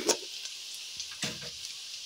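Chopped onions and green pepper strips sizzling gently in a little oil in a nonstick pan, with two faint knocks, one at the start and one a little over a second in.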